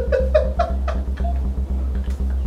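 A man laughing in short, quick bursts that climb in pitch, over steady background music with a low bass.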